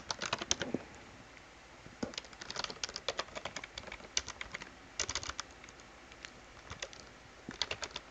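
Computer keyboard typing: short runs of keystroke clicks with pauses of a second or so between them, as terminal commands are typed in.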